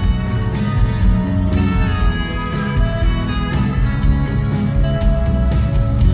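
A live indie rock band playing an instrumental passage with no singing: bass guitar, drums and keyboards, loud and steady, with a heavy low end.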